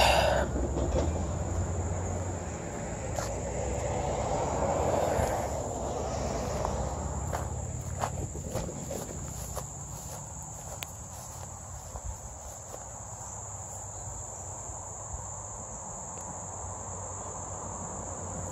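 Steady, high-pitched chorus of insects, one unbroken drone throughout. Lower rustling noise sits under it for the first several seconds, with a few faint ticks.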